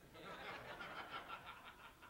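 Faint laughter from the congregation, a soft ripple of chuckles that dies away over the second half.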